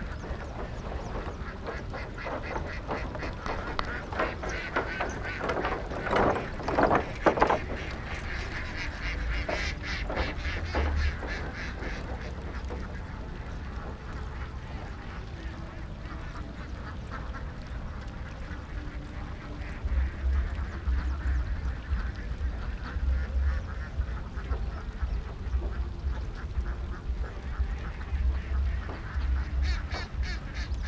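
A large flock of ducks quacking on the water, many calls overlapping, with a louder burst of quacking about six seconds in. A low rumble runs underneath, louder in the second half.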